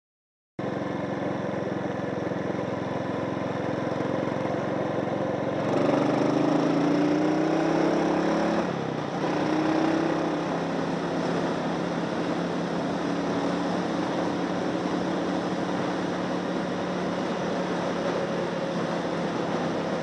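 Suzuki Boulevard S40's single-cylinder engine heard from the handlebars while riding: it rises in pitch as the bike accelerates about six seconds in, drops briefly at a gear change near nine seconds, climbs again, then settles into a steady cruise.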